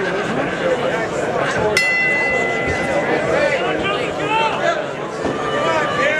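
Boxing ring bell struck once, a bright ringing tone that fades over about a second and a half, signalling the start of round two. Steady crowd chatter runs underneath.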